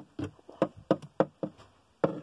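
A small plastic doll tapped against a hard surface, about six quick taps in a row, hopped along like footsteps.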